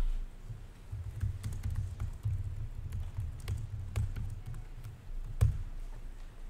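Typing on a computer keyboard: a continuous, irregular run of keystroke clicks with dull thuds, and one sharper knock near the end.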